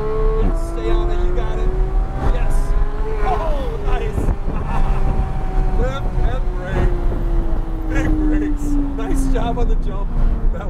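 Porsche GT3 flat-six engine running at speed on a race track, heard from inside the cabin. Its single steady engine note slides slowly lower in pitch throughout.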